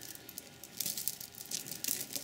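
A multi-strand necklace's metal chains and glass and magnesite beads clinking softly as they are handled, a quick run of small clicks starting about half a second in.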